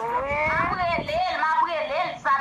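People's voices making drawn-out, wordless vocal sounds that glide up and down in pitch, several overlapping, heard over a phone video call.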